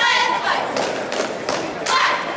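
Thuds of a cheerleading squad dancing on a wooden gym floor, mixed with loud voices calling out. A single sharp clap or stomp comes near the end.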